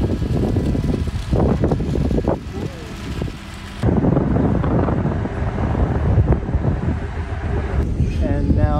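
Wind buffeting the microphone over a low, steady rumble from the harbour, with short fragments of distant voices; the sound changes abruptly about four seconds in.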